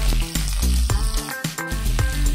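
Chopped garlic and onion sizzling as they fry in hot rendered pork fat in a pan, stirred with a spatula. Background music with a steady, bass-heavy beat plays over it and is the louder sound.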